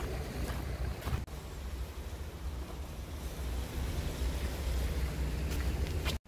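Strong wind buffeting the microphone in gusts, with surf washing over a rocky shore behind it and a few faint crunching footsteps on stones.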